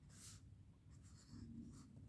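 Near silence, with a faint brief scratch of a pen moving on paper.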